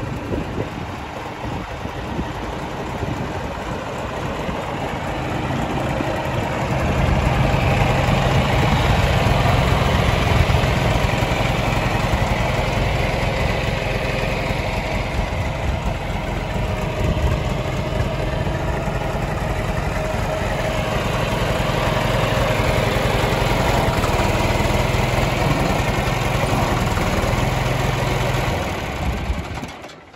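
Backhoe loader engine running steadily, picking up to a louder, higher run about seven seconds in. It stays up for most of the rest, with a slight easing in the middle, and falls away at the very end.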